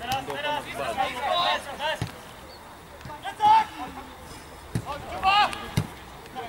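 Shouts from players on a football pitch calling to each other, with a few dull thuds of the ball being kicked.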